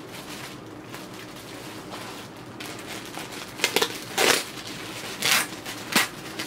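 Clear plastic packaging bag and foam wrap crinkling as a handbag is unwrapped: soft rustling at first, then several short, louder crinkles in the last two seconds.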